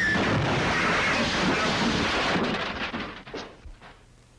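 Car crash sound effect: a loud, sustained crash lasting over two seconds that dies away in the last second with a few scattered clatters.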